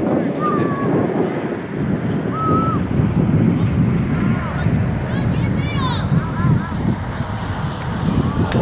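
Wind on the camera microphone, a steady low rumble, with a few faint distant shouts from the field and a cluster of short high chirps about six seconds in.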